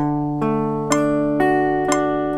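Archtop hollow-body guitar picking a harmonic arpeggio in D major: single notes picked about two a second, each one left ringing so the notes pile up into a sounding chord.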